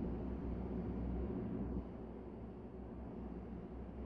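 Faint steady background hum and hiss with no other event, a little quieter from about two seconds in.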